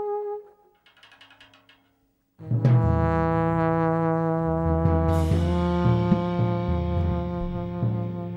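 Live brass band: a held note fades out about half a second in, and after a near-silent pause with a few faint taps the full horn section, trombones included, comes in about two and a half seconds in on a loud sustained chord over tom-toms struck with soft mallets. A crash and a change of chord come about five seconds in.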